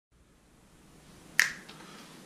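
A single sharp finger snap about one and a half seconds in, followed by a much fainter click, over faint room noise.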